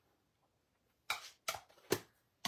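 Three short, sharp clacks of hard plastic crafting supplies on the desk, about half a second apart, starting about a second in: a stamp ink pad case and clear acrylic stamp blocks being handled.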